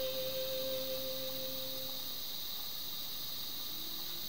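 The last held note of a pop song fades out about two seconds in, leaving only a faint steady hiss.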